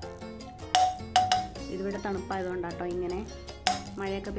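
Background music, with a metal spoon clinking sharply against a non-stick pan four times at irregular moments as a lump of coconut oil is knocked off it; each clink rings briefly on the same note.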